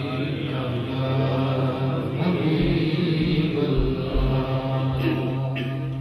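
A man's voice chanting a devotional Urdu/Punjabi naat through a microphone, drawing out long melismatic held notes with no words, over a steady low note held underneath. It fades out just before the end.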